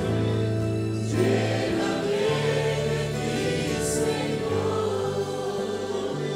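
Congregation singing a worship song together over sustained instrumental chords that change every second or two.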